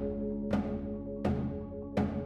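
Live percussion ensemble music: three sharp strikes, a little under a second apart, over sustained ringing pitched tones and low drum notes.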